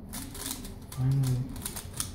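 Plastic clicks of a Valk Power 3x3 speedcube as its layers are turned quickly in the hands, a rapid run of clicks. About a second in there is a short, steady low hum, the loudest sound.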